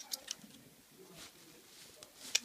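Handling noise of plastic toy dolls being moved: two light clicks just after the start, then faint rustling.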